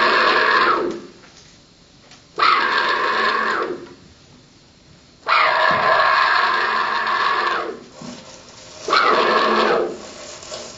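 Live experimental electronic improvisation: four loud bursts of rasping, hissy noise that each start abruptly, last one to two and a half seconds and then fade, with quiet gaps between.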